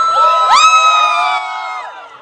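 Crowd of spectators, many of them children, cheering, with several long, high-pitched shrieks overlapping. A second wave of shrieks comes in about half a second in, and they fade out near the end.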